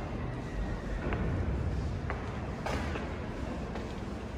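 Footsteps climbing stone stairs: a few faint taps about a second apart over a steady low rumble.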